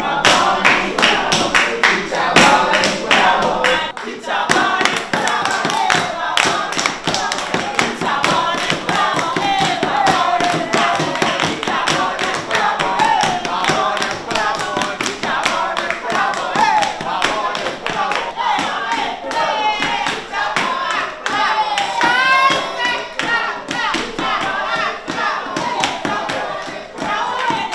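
A group of young voices singing a song together, with hand claps and knocks keeping a steady beat.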